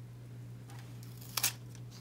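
A short papery crackle of a washi sticker overlay being handled and laid onto a planner page, one sharp crackle about one and a half seconds in after a faint rustle, over a steady low hum.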